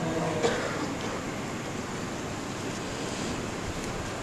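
A pause in melodic Quran recitation: the reciter's last held note fades out within the first half second, leaving a steady hiss of background noise.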